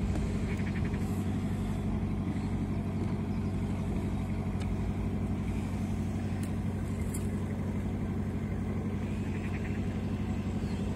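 A small cabin cruiser's engine idling steadily while the boat is pushed off from the bank.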